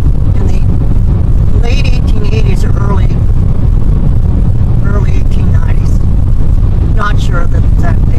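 Steady low road and engine rumble of a car driving along a paved highway, heard from inside the cabin.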